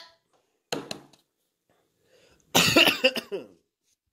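A person coughing: one short cough about a second in, then a louder, longer bout of coughing about two and a half seconds in.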